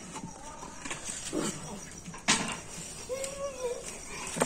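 Fresh bean pods being pressed by hand into a clay pot, with a sharp rustling crunch about two seconds in. A short animal call near the end.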